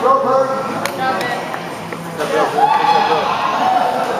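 Untranscribed voices of people talking and calling out in a large hall, with a few sharp clicks or taps.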